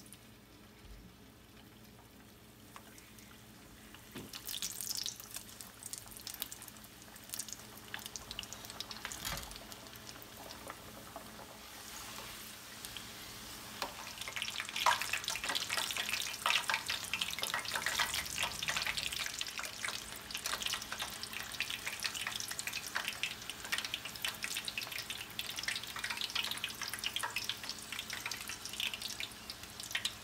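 Samosas deep-frying in hot oil in a pan: the oil sizzles and crackles, faint for the first few seconds, then growing busier and denser from about halfway on.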